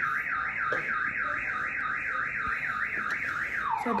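An electronic alarm warbling rapidly up and down in pitch, about four times a second, then switching to a lower warble near the end.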